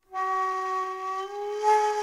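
Outro music: a flute holding one long note that steps up slightly in pitch about halfway through.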